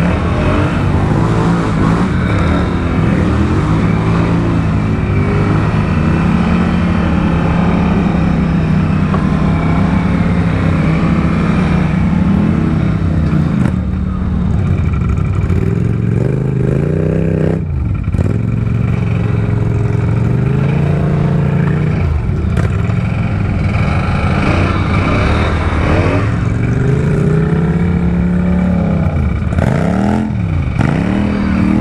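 Quad ATV engines running hard in thick mud, the pitch climbing and falling over and over as the throttle is worked. The sound briefly drops a little past the middle.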